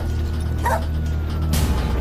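A dog giving a few short barks over a low, steady background music drone.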